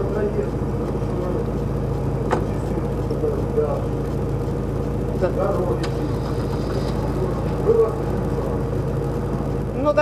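Car engine idling, a steady low hum heard from inside the car's cabin, with a man's voice faintly on top.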